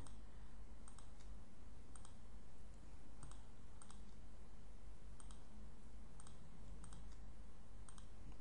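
Computer mouse buttons clicking a dozen or so times, some as quick double clicks, while checkboxes are selected and dragged into line in a GUI layout editor. The clicks are faint, over a steady low hum.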